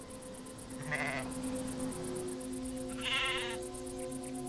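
Sheep bleating twice, a short call about a second in and a higher, quavering one near the end, over background music of steady held notes.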